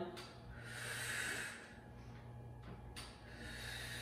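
A woman breathing hard during exertion: one long exhale about half a second in, and a softer breath near the end, over a steady low hum.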